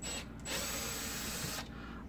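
Cordless drill-driver running briefly and then steadily for about a second, backing a screw out of the steel housing of a power strip.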